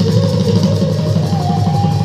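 Bhaona accompaniment music for the Sutradhar dance: khol barrel drums played in rapid strokes under a single held melodic note that steps up in pitch near the end.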